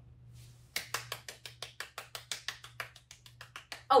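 Hands clapping in a quick, even round of applause, about five claps a second, starting just under a second in.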